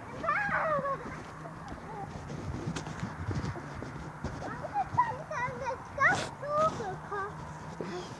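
A young child's high voice, with no clear words: a short call near the start, then a string of short high calls and chatter through the second half.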